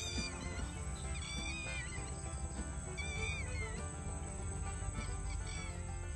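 Soft background music plays steadily, with faint high-pitched bird chirps in two short bursts, about a second in and again around three seconds, and a few weaker ones near the end.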